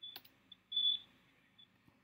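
A sharp click, then a short high-pitched beep lasting about a third of a second a little under a second later, with a few fainter blips of the same tone around it.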